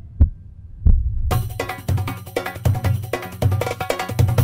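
Low, heartbeat-like double thumps of a suspense score, then about a second in, film music with a steady percussion beat starts.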